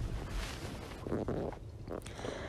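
Low rumble and faint hiss of background noise, with no speech.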